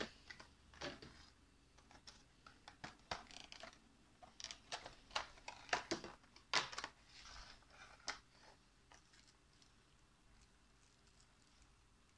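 Clear plastic blister tray around a model airliner crinkling and clicking as it is handled and pried open: a scatter of short, sharp crackles that stops about eight seconds in.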